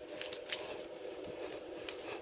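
Faint rustling and a few light clicks of hands pressing and sliding along a self-adhesive LED strip as it is stuck to a wall, over a faint steady hum.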